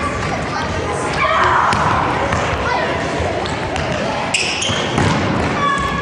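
Children shouting and running in a large, echoing sports hall, with repeated thumps on the gym floor.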